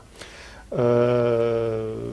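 A man's drawn-out hesitation sound "eh", held on one steady low pitch for over a second, starting just under a second in after a short quiet gap.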